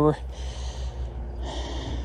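A man's breathing close to the microphone: two soft breaths between words, the second about a second and a half in. A steady low hum runs underneath.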